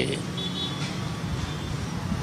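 Steady low background rumble like road traffic, with a faint thin high tone for about half a second near the start.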